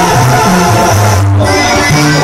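Loud live banda music: brass and clarinets playing over a bass line that moves from note to note.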